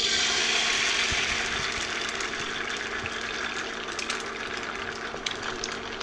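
An egg sizzling as it hits hot clarified butter in a cast-iron pan. A frying hiss with fine crackles starts suddenly and eases slightly as the egg sets.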